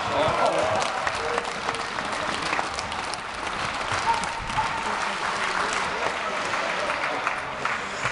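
Hockey crowd clapping, with many overlapping voices and short sharp claps throughout.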